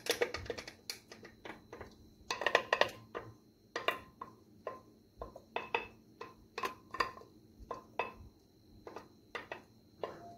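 Wooden spoon knocking and scraping against the inside of a glass blender jug as thick blended mushroom mixture is worked out into a pot: a string of irregular sharp taps, bunched more densely just after the start and around three seconds in.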